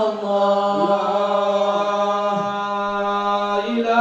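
Men's voices chanting devotional verses for the Prophet's birthday (sholawat) into microphones, holding long notes with slow melodic turns.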